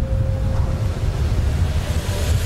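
Wind buffeting an outdoor microphone: a loud, steady low rumble.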